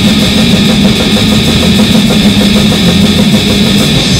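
Grindcore band playing: heavily distorted guitar and bass in a dense, unbroken wall of noise, with low riff notes shifting underneath.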